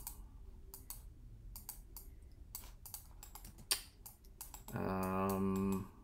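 Scattered clicks of a computer mouse and keyboard. Near the end a man's voice holds a steady, level-pitched 'uhh' for about a second.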